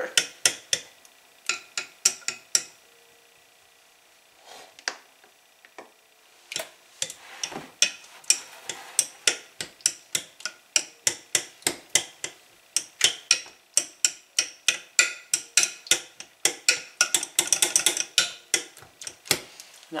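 A stirring utensil knocking and scraping against a glass mixing bowl as cake batter is mixed by hand, in a quick run of clicks about three a second. The clicking pauses for a few seconds about three seconds in, then resumes.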